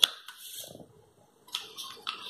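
Light handling sounds of a smartphone being set down on its cardboard box: a sharp tap at the start, then faint rustling and scraping after a short pause.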